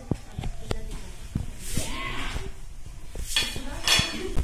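Metal snake tongs clicking and knocking on a tiled floor as a baby Indian spectacled cobra is pinned and grabbed, with two long hisses, the first about one and a half seconds in and the second near the end.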